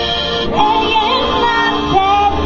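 Live electronic music: a woman's singing voice glides and wavers over sustained synthesizer tones.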